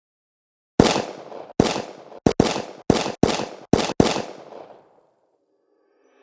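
Gunshot sound effects: eight single shots at uneven intervals over about three seconds, starting about a second in, each dying away in a short echo.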